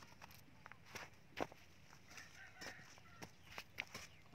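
A hoe blade chopping and scraping into dry, hard soil to fill a planting hole: a series of short sharp knocks, the loudest about a second and a half in.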